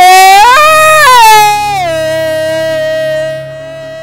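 A long, loud scream from Mario. It jumps up in pitch about half a second in, holds, then slides down into a steady held cry that fades in loudness near the end.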